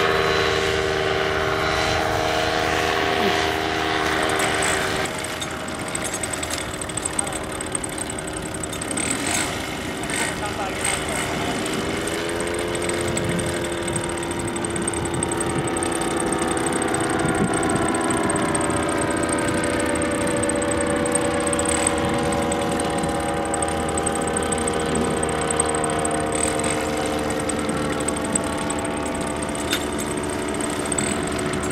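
Paramotor engine and propeller running with a steady drone: first a paramotor flying overhead, then, partway through, one idling on the ground on the pilot's back, its pitch stepping up slightly about twelve seconds in.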